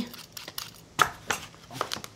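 A blade working an apple: a few sharp clicks and short scrapes of the peeler and knife on the fruit and cutting board, mostly in the second half.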